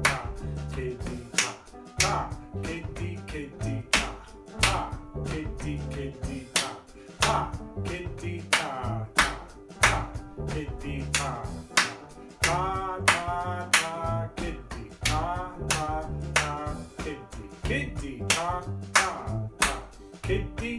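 Hand claps and body percussion played in a steady rhythm over a music backing track, with a voice singing along in places.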